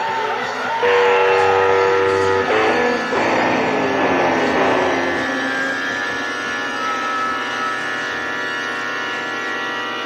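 Electric guitar playing an improvised lead line, with long held notes and sliding bends.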